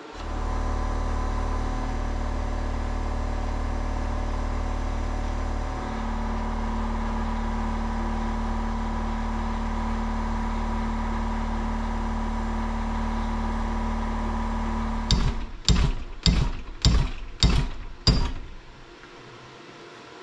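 Electric power-tool motor running steadily at the workbench, its tone shifting about six seconds in as the work is pressed against it. It stops about fifteen seconds in, followed by six sharp knocks.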